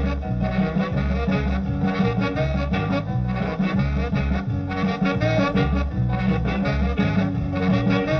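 Instrumental break of an early-1960s rock-and-roll twist number: the band plays a steady dance beat with a pulsing bass line and horns, with no singing.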